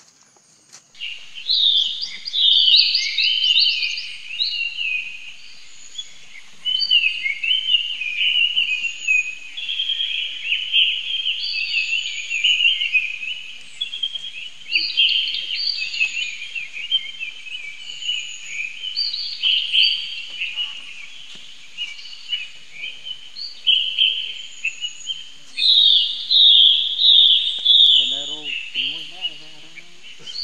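Birds chirping and singing in a dense, continuous chorus of overlapping quick, high calls, with a faint steady high insect drone beneath them.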